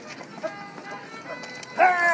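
A fiddle playing a dance tune, with the rapper dancers' shoes stepping and tapping on stone paving. A voice calls out loudly just before the end.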